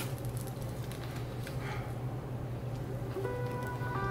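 Background music with plucked guitar-like notes that come in about three seconds in. Under it are faint soft sounds of biting and chewing a turkey burger with lettuce.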